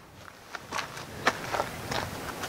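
A CGM Sidewinder tree saddle's webbing and hardware rustling and clicking softly as it is shifted and hitched up on the wearer's waist, a scatter of light clicks.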